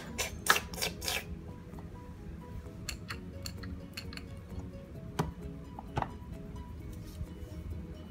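Background music, with three sharp clicks about a second in and scattered lighter taps later, from a hard plastic toy baby bottle being handled and set down.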